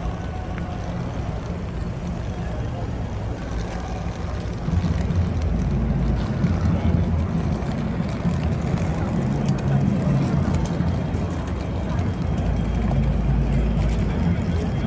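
Outdoor city-street ambience: a steady low rumble that grows louder about five seconds in, with faint voices of people passing by.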